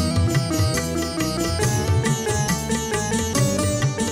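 Live band instrumental interlude of a Telugu film song: a quick sitar-toned plucked melody over a tabla beat, the low drum's pitch bending on some strokes.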